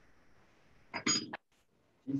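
A metal spoon clinking and clattering against cookware for about half a second, about a second in, with a short high ring.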